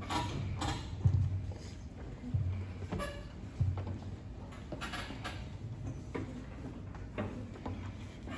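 A few dull knocks and bumps against a table, the loudest about a second in, over the faint fidgeting murmur of children crowded around it.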